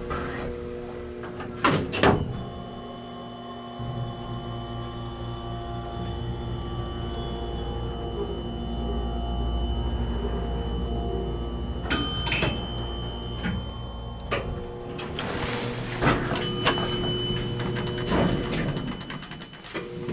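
Arrow hydraulic elevator travelling up one floor: clicks at the start, then the low hum of the hydraulic pump for about ten seconds while the car rises. After it stops, high ringing tones sound and the doors slide open.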